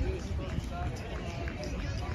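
Indistinct voices of people talking and calling outdoors, over a steady low rumble.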